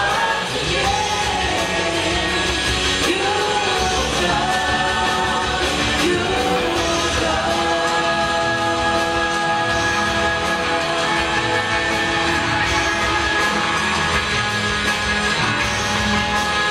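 Live worship band playing, with vocals and guitars over a full band. A sung melody moves through the first half, then gives way to steadier held notes.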